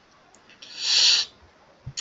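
A single loud breath drawn in close to the microphone, a short breathy rush that swells and fades within under a second.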